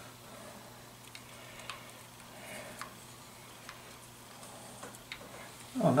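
Faint scattered clicks and light metallic taps from small parts being handled while a wire terminal and nut are fitted on a motorcycle's ignition points and stator plate.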